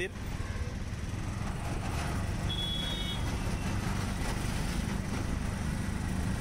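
Auto-rickshaw's small engine running steadily as it drives along a busy street, heard from inside the open cabin with road and traffic noise. A short high beep sounds about two and a half seconds in.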